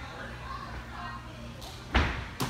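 A gymnast's hands strike the balance beam with one sharp thud near the end, as she goes into an inverted skill. Under it is the hum of a large gym with faint distant voices.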